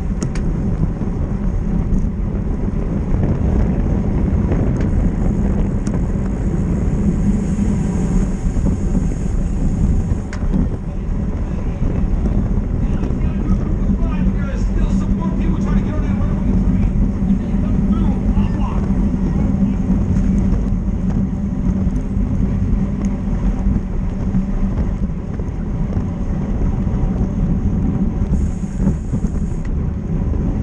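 Steady wind rushing over a bicycle-mounted action camera's microphone at racing speed, about 40 km/h, with faint voices in the middle.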